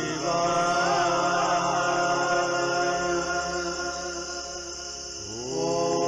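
Sanskrit mantra chanted over a steady drone. A wavering, ornamented vocal line in the first couple of seconds fades toward the middle, then a new long held note slides up into place about five seconds in.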